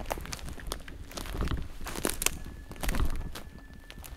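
Footsteps crunching over a forest floor of conifer needles and twigs, with irregular snaps and soft thuds. Near the end, a faint, distant human whistle holds one steady note for about a second and a half.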